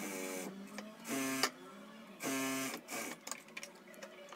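Sewing machine stitching a seam in three short runs of about half a second each, with brief pauses between them.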